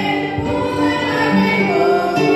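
A congregation singing a hymn, led by a woman's voice on a microphone, over electronic keyboard accompaniment played through loudspeakers; the notes are held and change every half second or so.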